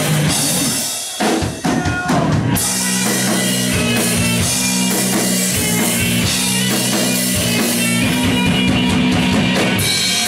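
Live rock band playing, heard from the audience: drum kit and electric guitars. The band drops out briefly about a second in, the drums come back with a few hits, and the full band returns with steady chords at about two and a half seconds.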